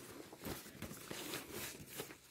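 Faint rustling of a fabric diaper bag and the items inside as hands push things into its pockets, with a few light taps.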